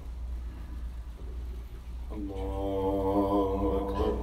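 A man's voice chanting one long, held note of Arabic prayer recitation, starting about halfway in, over a steady low hum.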